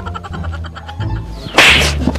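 Background music, then a short, sharp whip-like swish about one and a half seconds in, much louder than the music.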